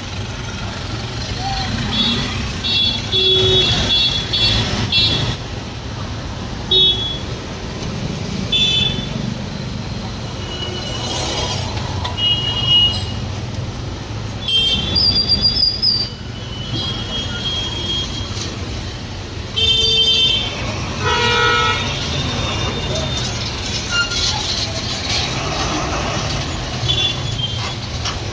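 Busy road traffic running steadily, with frequent short vehicle horn toots and background voices.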